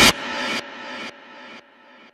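The tail of a TV advert's soundtrack dying away in even steps about every half second, like a repeating echo, each repeat fainter than the last.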